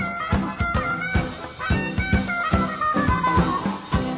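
Live band playing an instrumental passage, heard on an audience recording: drum kit and electric bass keep a steady beat, with guitar and a high lead line that slides gradually downward over a couple of seconds.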